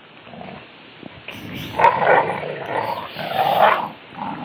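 Two pit bulls growling in play as they tug on a rope toy. The growls start about one and a half seconds in and come in rough, uneven bouts, loudest near the end. They are play growls, not aggression.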